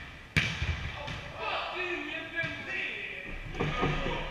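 A volleyball struck hard at the net with one sharp slap about a third of a second in, echoing through the gym hall. Players' voices call out afterwards, with another knock of the ball or feet on the wooden floor near the end.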